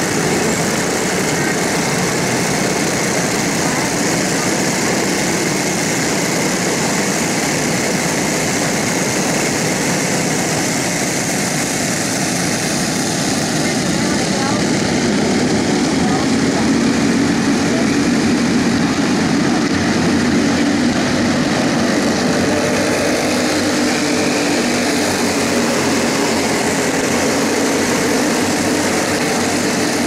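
Racing go-kart engines running together on a track: a steady, dense engine drone that grows a little louder about halfway through.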